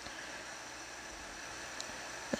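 Faint steady background hiss and low hum of room tone, with one small tick near the end.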